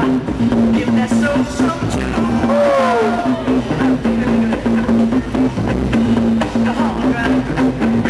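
Funk track played loud over a PA system, with a repeating bass note and a steady drum beat.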